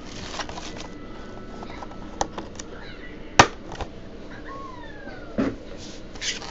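Cardboard card boxes and foil packs being handled and set down on a table: a few sharp taps and knocks, the loudest about halfway through.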